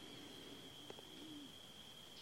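Near silence: faint room tone with a faint steady high whine, and a faint low bird call that rises and falls, about a second in.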